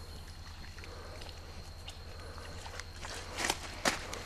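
Quiet outdoor background with a steady low rumble and a faint steady high tone that stops about three seconds in; near the end, a few rustling footsteps on grass and dry ground come close.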